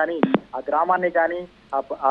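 Speech: a voice talking in Telugu, news-report style. A short electronic blip cuts in just after the start.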